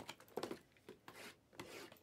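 Faint rubbing and handling of shrink-wrapped cardboard card boxes being slid on a table, with a soft knock about half a second in.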